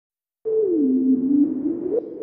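Synthesized intro sound effect: a single electronic tone that slides down in pitch and rises again over a hiss, starting about half a second in.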